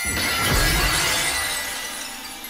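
Glass-shattering sound effect: a sudden crash with a low thud and a bright, glittering tinkle that fades out over about a second and a half.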